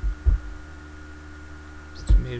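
A steady low hum with a thin high whine above it, and one soft low thump shortly after the start.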